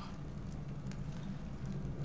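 A quiet, steady low hum under faint background ambience, with no distinct sound events.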